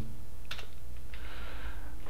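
A single computer keyboard key press about half a second in, confirming an installer prompt, followed by a short soft hiss over a steady low hum.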